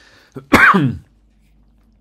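A man's quick breath in, then one loud throat-clear lasting about half a second, its voiced part falling in pitch.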